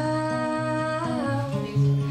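A woman's voice holds one long sung note, without clear words, that slides down a little after a second in, over fingerpicked acoustic guitar.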